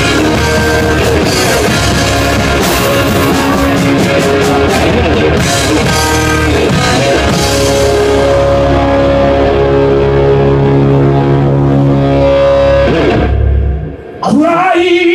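Live rock band playing loud: electric guitar over drum kit with cymbal hits, then from about eight seconds a long held chord rings out and stops abruptly just before the end.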